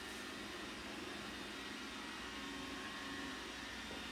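Low, steady background noise with no distinct sound events: room tone.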